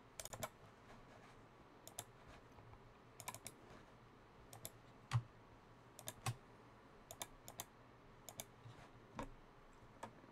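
Faint, irregular clicking and key tapping at a computer, in small clusters of two or three with pauses between, one louder click about five seconds in.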